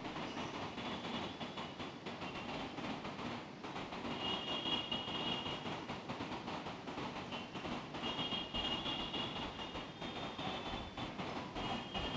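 Faint, steady rumbling background noise of a large church hall, with a faint high whine that comes and goes a few times.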